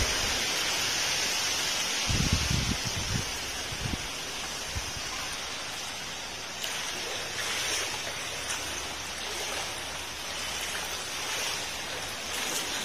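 Heavy rain falling steadily, a dense even hiss, with a few low thumps about two to four seconds in.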